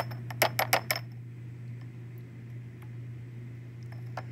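Glass test tube being shaken in a plastic test-tube rack, clinking about six times in quick succession in the first second and once faintly near the end.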